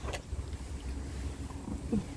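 Dogs crunching dry kibble from a bowl, with a steady low rumble of wind on the microphone. Near the end there is a brief falling squeak.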